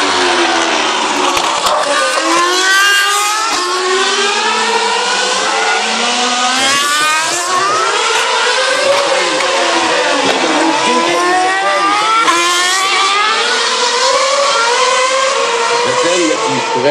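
Formula One cars' 2.4-litre V8 engines accelerating past one after another. Each one's note climbs in a stepped, rising whine broken by quick upshifts, and the passes overlap.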